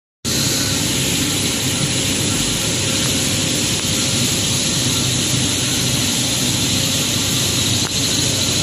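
Printing machine for polypropylene woven bag fabric running steadily, its rollers carrying the printed fabric web: a loud, even mechanical noise with a faint steady tone.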